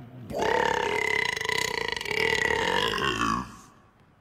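A man's long burp, held at a steady pitch for about three seconds and trailing off near the end.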